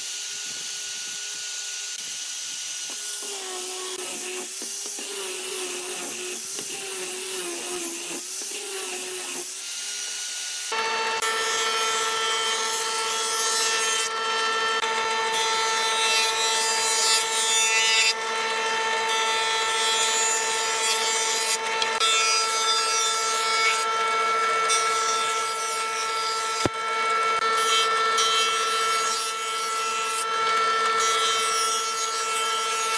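An angle grinder with a sanding disc sands a wooden board, its motor pitch wavering with the pressure. About eleven seconds in, a jointer takes over: its motor runs with a steady whine while boards are fed over the cutterhead, and the cutting noise drops away briefly between passes, about every few seconds.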